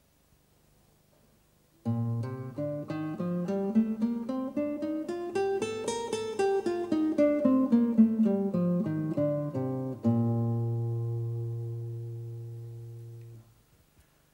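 Nylon-string classical guitar playing a B-flat major scale, one plucked note at a time, up over two octaves and back down. It ends on a low B-flat left ringing and fading for about three seconds.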